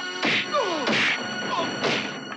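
Three dubbed punch sound effects from a movie fistfight: sharp whacks about two-thirds of a second apart, each trailed by a short falling tone.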